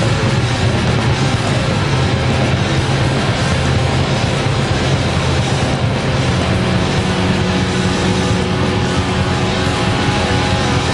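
Rock band playing live: a loud, dense wash of distorted electric guitars and drums with no clear beat, with a held note coming in about six seconds in.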